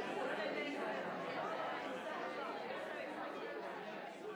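Many people talking at once in a large room: the hubbub of a standing reception, with no one voice standing out, fading gradually.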